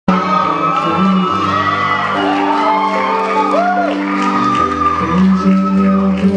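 A live band playing in a hall, with sustained chords on a stage piano, while audience members shout and whoop over the music.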